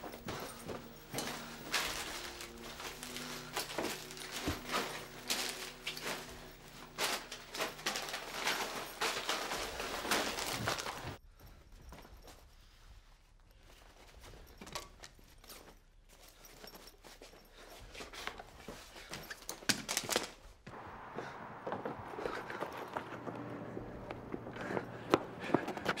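Rapid handling and packing noises: many quick knocks, clatters and clicks of objects being grabbed and moved, with footsteps. The clatter is busiest for the first ten seconds or so, thins out to a few scattered clicks, then picks up again near the end.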